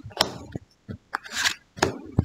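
Lenormand cards being drawn from a fanned deck and laid on a velvet cloth: a series of crisp card snaps and taps, with a short sliding rustle of card stock about halfway through.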